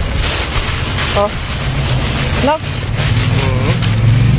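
A steady low motor hum runs throughout, with plastic bin bags rustling as they are moved.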